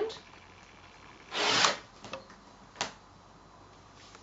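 Rotary cutter drawn once along an acrylic ruler, slicing through four layers of folded cotton fabric on a cutting mat: one quick cut lasting under half a second, about a second and a half in. Two light clicks follow.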